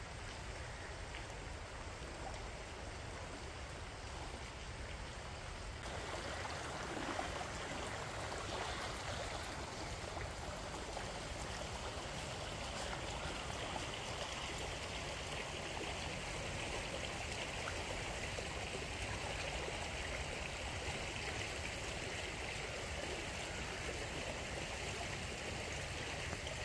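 Steady rush of flowing floodwater, a little fuller from about six seconds in.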